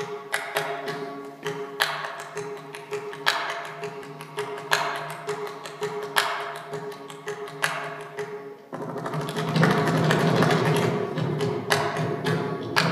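Mridangam being played solo in a Carnatic rhythmic passage: sharp, ringing strokes on the tuned drumheads over a steady drone. About nine seconds in it breaks into a faster, denser and louder run of strokes.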